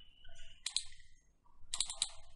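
Computer mouse clicks: a quick pair about two-thirds of a second in, and a short cluster of clicks near the end.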